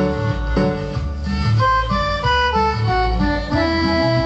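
Cumbia lead melody played on a Korg X50 synthesizer keyboard over a bass and rhythm accompaniment. The melody runs in single notes stepping downward and settles into a long held note about three and a half seconds in.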